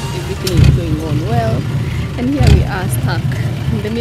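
A person's voice speaking in short untranscribed phrases, over a loud low rumble that swells twice.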